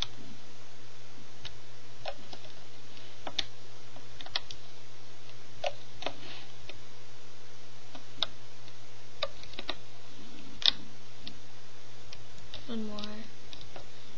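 Scattered light plastic clicks from a Rainbow Loom hook and rubber bands catching on the loom's pegs as bands are pulled over, at about one every second, over a low steady hum. A brief hummed voice sound comes near the end.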